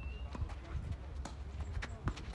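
Tennis rally on a clay court: scuffing footsteps on the clay and a few light knocks of ball and racket, over a steady low wind rumble on the microphone.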